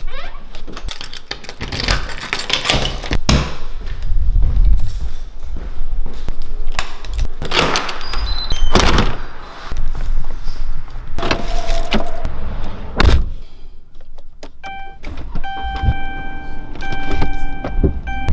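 Clicks, thunks and handling noise of a door latch, keys and a car door opening and shutting. Near the end a car's electronic warning chime repeats in short steady beeps.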